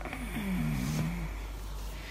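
A person's brief low hum or groan, about a second long, falling in pitch.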